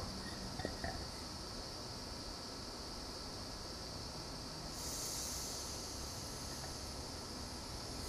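Faint steady hiss. About halfway through, a brighter, higher hiss comes in as propane starts to flow through the unlit torch's nozzle, its valve just cracked open.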